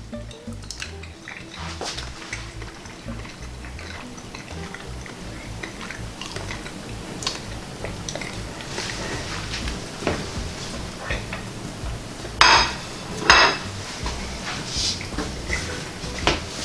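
A plate and utensils clinking and clattering, with scattered small clicks and two louder clatters about a second apart near the end.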